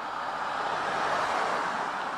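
Mercedes-Benz GLC driving past on a road: mostly tyre and road noise that swells to a peak about halfway through and then fades as the car moves away.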